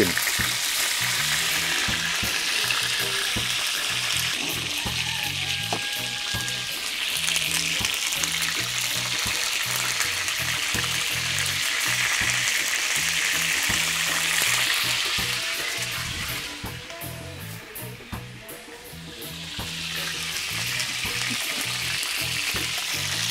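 Chicken pieces sizzling in hot oil as they brown in a cast-iron pan, a steady frying hiss. It dies down for a couple of seconds near the end, then picks up again.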